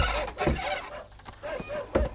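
A wooden gate being unbarred and pulled open: a heavy knock at the start, another about half a second later and one more near the end. Short repeated animal calls sound underneath.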